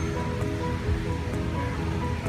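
Background music of slow, held notes that change every half second or so, over a steady low rumble.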